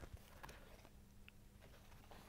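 Near silence: room tone with a faint low hum and a few very faint clicks.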